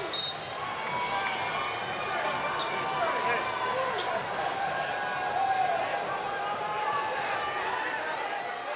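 Steady noise of a large arena crowd, many indistinct voices overlapping, with a few faint sharp ticks.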